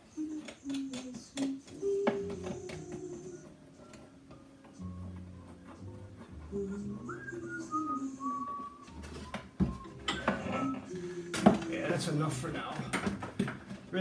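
Wooden spool clamps being handled and adjusted around the edge of a cello body clamped to its back plate: scattered clicks and knocks, the loudest about ten and eleven and a half seconds in. A slow tune with held notes runs underneath.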